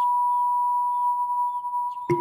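A steady electronic sine-wave tone, one unchanging whistle-like pitch, with four faint short chirps repeating above it.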